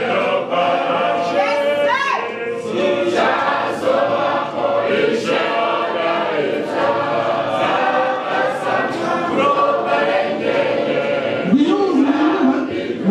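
A group of voices singing a hymn together, with sharp regular beats about every two-thirds of a second.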